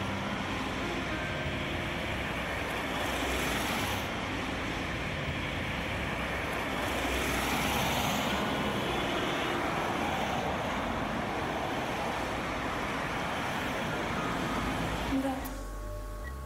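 Road traffic noise, with cars passing on a busy road and swelling a couple of times as vehicles go by. It cuts off suddenly near the end.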